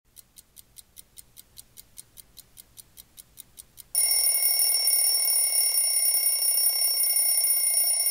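A digital alarm clock beeping faintly and rapidly, about five short high beeps a second. About four seconds in, a much louder steady electronic ringing with several high tones cuts in and holds.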